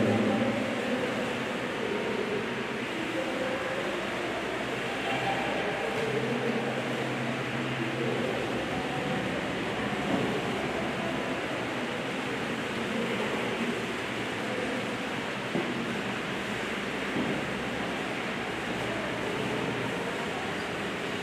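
Steady room noise from an electric fan and ventilation, an even hiss with a couple of faint knocks about halfway through.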